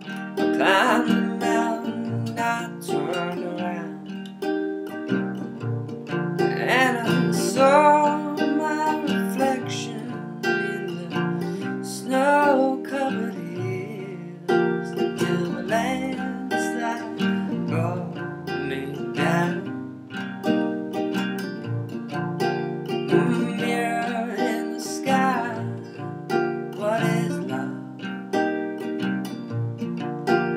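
Acoustic guitar fingerpicked in a steady pattern, with a man's voice singing over it at times.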